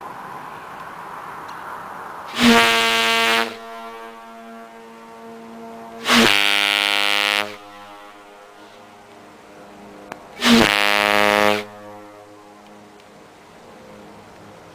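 A brass ship horn mounted on a car roof, fed by an air hose, sounds three blasts of about a second each, one steady deep note, about four seconds apart.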